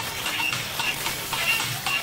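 Gas welding torch flame hissing and sizzling on rusted sheet steel as it throws sparks, with background music playing alongside.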